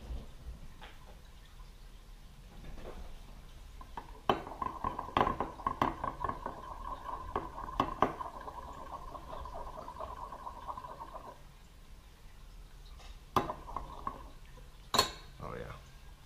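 Metal spatula stirring warmed plastisol in a glass measuring cup. A steady scraping with quick clinks against the glass runs for about seven seconds, then a couple of sharp single clinks come near the end.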